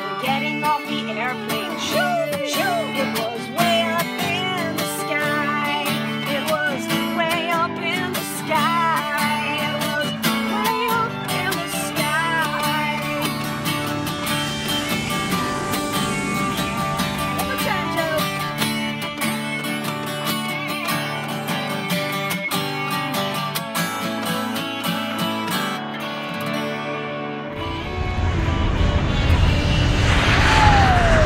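Acoustic guitar strumming chords under an electric guitar playing lead lines with string bends. Near the end the guitars stop and a loud low rumbling noise takes over.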